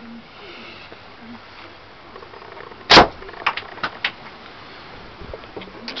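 Catapult shot from a thin multiplex-frame slingshot with heavy-draw gamekeeper bands firing a 12 mm lead ball: one loud, sharp crack about three seconds in, followed by a few lighter clicks.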